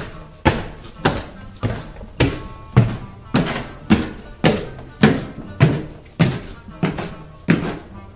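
Slow, heavy footsteps climbing stairs: a steady series of single thuds, just under two a second, each with a short ringing tail.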